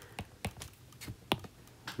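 Stylus tapping on an iPad screen: several quiet, irregularly spaced clicks, the loudest a little past halfway.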